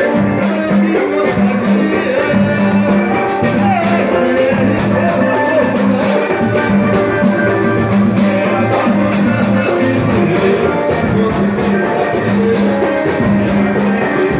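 Live samba played on cavaquinho and acoustic guitar, strummed to a steady beat.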